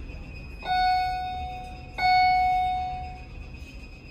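Otis elevator's hall arrival chime dinging twice, a little over a second apart, each ding ringing out and fading, announcing the car's arrival at the floor.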